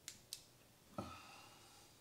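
Two quick small clicks of a handheld flashlight's switch, a quarter second apart, then a soft brief handling sound about a second in.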